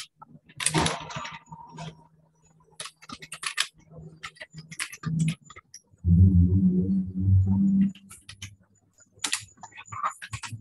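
Typing on a computer keyboard: irregular bursts of key clicks with short pauses. About six seconds in, a louder low droning sound lasts roughly two seconds.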